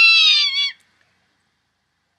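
Recorded call of a zone-tailed hawk: the tail of one long, slightly falling scream that stops about three-quarters of a second in.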